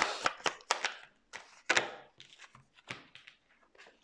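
A tarot deck being shuffled by hand: a quick run of crisp card flicks and taps in the first second, then sparser, quieter clicks and rustles of the cards.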